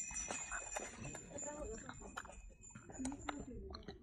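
A macaque chewing fruit: a run of quick, irregular wet mouth clicks and smacks, with faint voices under them.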